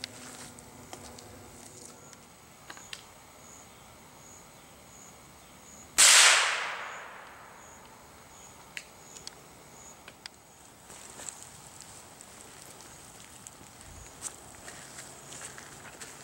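A single shot from a Henry lever-action rifle about six seconds in, its report trailing off over about a second and a half; the bullet splits a playing card set edge-on.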